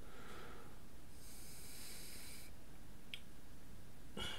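A long breath out through the nose close to the microphone, starting about a second in and lasting a little over a second, with a single faint click about three seconds in.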